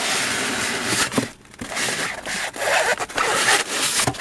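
Polystyrene foam packing blocks scraping and rubbing against each other as they are worked apart. A steady scraping noise runs for about a second, there is a brief pause, then more uneven scrapes follow.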